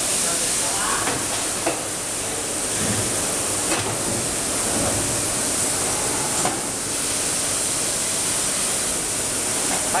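Steady hiss of running machinery on a workshop floor, with a few light clicks.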